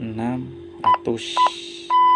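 Motorola GP2000 handheld radio keypad beeping as number keys are pressed to enter a frequency: two short beeps about half a second apart, then a longer beep near the end.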